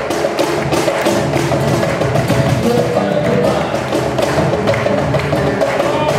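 Cajón struck by hand in a steady, dense rhythm, with acoustic guitar, in a live Afro-Peruvian music piece.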